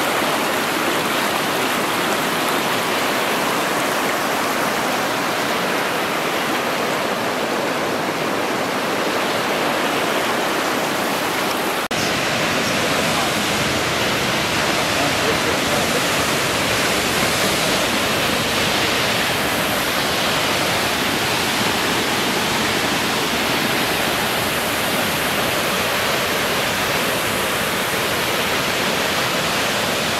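Steady rushing of a fast, shallow river running over rocks. About twelve seconds in, a cut changes it to the fuller, slightly deeper noise of a tall waterfall pouring down a rock face.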